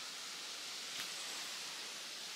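Quiet outdoor background in a forest: a faint, steady hiss with one soft click about a second in.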